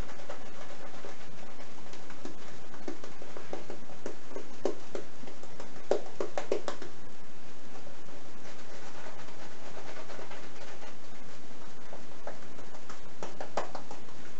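A wet shaving brush scrubbing lather onto the face and neck: soft, squishy bristle strokes that come in a few quick runs about four to five seconds in, around six seconds in and near the end, over a steady background hiss.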